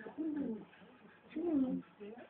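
A person's voice making two short wordless drawn-out sounds, about a second apart, each falling in pitch.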